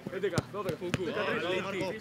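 A football kicked sharply a couple of times as it is passed quickly between players, over several overlapping voices calling out.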